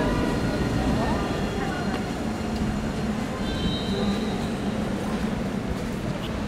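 Electric low-floor tram at a platform, its running gear and motors giving a steady low rumble and hum that slowly fades. A brief high whine comes about halfway through.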